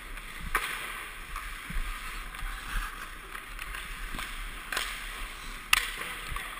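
Skate blades scraping and gliding on rink ice, picked up by a helmet-mounted camera along with a steady rush of air over its microphone. A few sharp knocks cut through, the loudest near the end.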